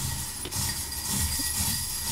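Steady rushing noise with a low rumble underneath, starting suddenly and lasting about two seconds.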